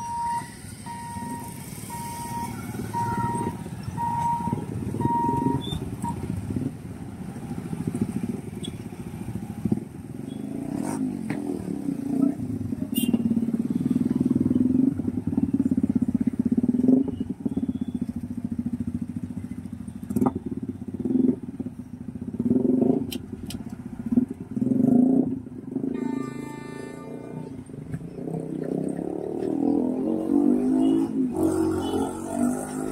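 Motorcycles and other road vehicles running and passing in a steady stream of engine noise. A short beep repeats for the first six seconds, and a horn sounds briefly near the end.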